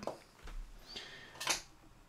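Quiet handling sounds from a finger pressing the knob of a Valeton GP-5 multi-effects pedal, with one short click about one and a half seconds in.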